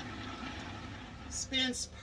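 A steady low hum, with a woman starting to speak near the end.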